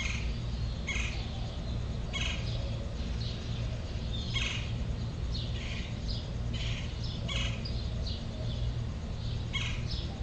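Birds chirping: short, high chirps, many sliding downward, repeated every half second to a second, over a steady low hum.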